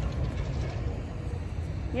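Low, steady outdoor rumble with a faint hiss above it, as from a phone microphone carried across a parking lot.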